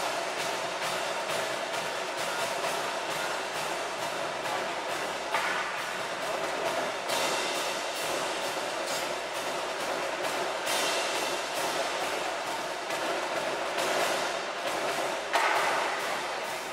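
Marching band playing, brass over a steady pattern of drum strokes. A loud accented hit comes shortly before the end.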